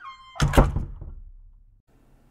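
Sound effects on an animated title graphic: a brief chime tone, then about half a second in a loud thud whose low rumble dies away over roughly a second.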